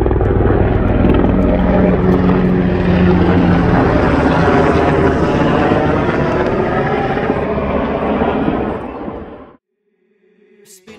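Helicopter flying overhead, its rotor and engine loud and steady. The sound fades a little over the last couple of seconds and then cuts off abruptly near the end.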